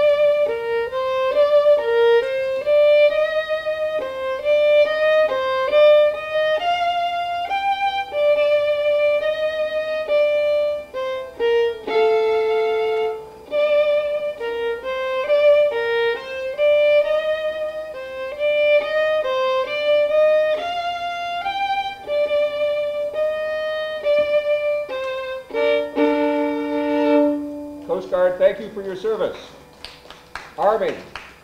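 Solo violin playing a U.S. military service-hymn melody, partly in double stops. The playing stops about two seconds before the end and a voice follows.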